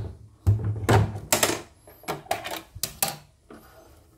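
A string of irregular sharp clicks and knocks from hands handling the plastic body and needle-plate area of a CNY portable embroidery machine.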